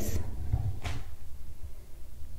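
Soft handling noise of hands working a crochet hook and yarn over a low steady rumble, with one short rustle a little before the middle.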